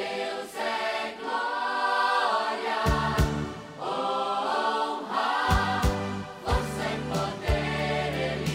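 Gospel worship song in Portuguese: several voices singing together over a band, with low bass notes and drum hits.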